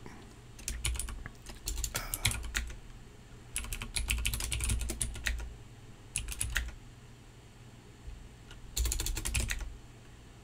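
Typing on a computer keyboard in about five short bursts of keystrokes with pauses between.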